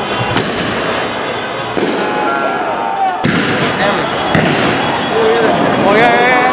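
A small firework tube set on the street going off with four sharp bangs about a second and a half apart, over a crowd of shouting voices.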